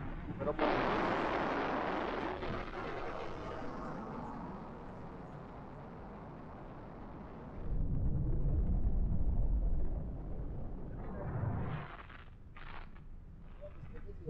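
Wind rushing over the camera's microphone in flight under a tandem paraglider: a hiss that builds about half a second in and slowly fades, then heavy low buffeting for about two seconds, and briefly again near the end.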